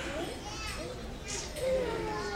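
Many young children chattering at once, a jumble of overlapping voices.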